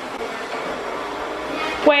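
Robot vacuum cleaner running across a tile floor, its motor and brushes making a steady whirring hiss.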